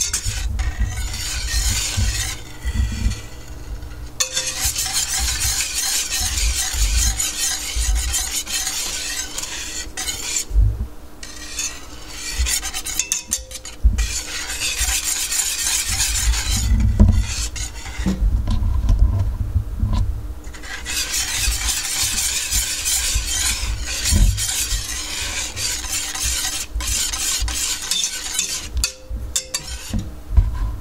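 Wire whisk stirring and scraping around a stainless steel pot of melting butter, milk and sugar. It goes in long runs broken by a few short pauses.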